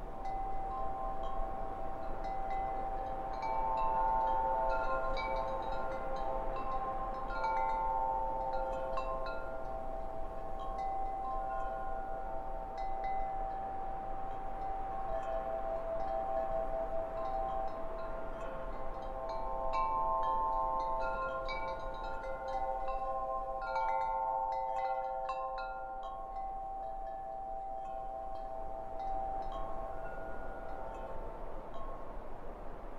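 Wind chimes ringing, long tones at several pitches starting at irregular moments and overlapping.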